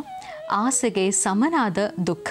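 A woman speaking in an animated voice, her pitch rising and falling, with a steady background tone under the start of her words.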